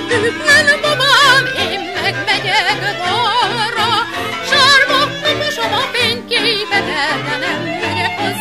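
Hungarian magyar nóta song: a woman singing with wide vibrato over a string-band accompaniment.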